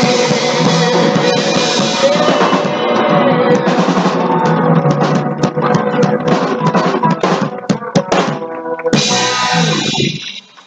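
Live band of drums, bass, guitar and keyboard playing the ending of a soul song, recorded on a laptop microphone with poor sound. The full band plays until about three seconds in, then drum hits and fills punctuate the close, and a final full-band chord comes in near the end.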